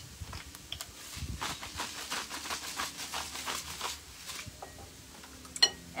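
Hand salt grinder twisted over a bowl of eggs: a quick, even run of grinding clicks lasting about three seconds, starting a little over a second in, followed by a single sharp click near the end.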